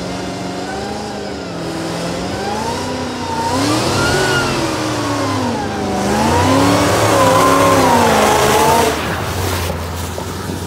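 Supercharged 426 V8 of a Dodge Charger, fitted with a Demon blower, revving hard as the car accelerates. The engine note rises and falls twice, louder on the second surge, and drops away sharply near the end.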